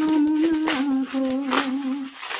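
A woman humming a slow melody in long held notes, the pitch stepping down about two-thirds of a second in, with brief crinkling of plastic bubble wrap being handled.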